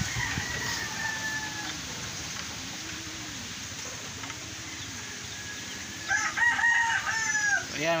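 A rooster crowing, loudest in a multi-part crow about six seconds in, with a fainter crow trailing off at the start. Low, repeated pigeon coos sound in between, roughly one a second.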